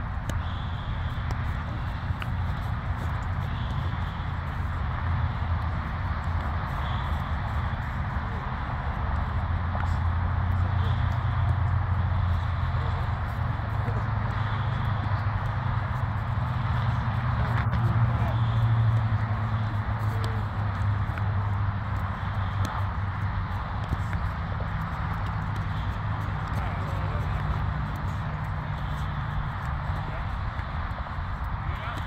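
Steady wind rumble on the microphone, swelling in the middle, with faint voices in the background.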